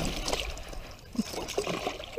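Water splashing and trickling at the side of a small aluminum boat as a hooked bowfin moves at the surface, in irregular small splashes.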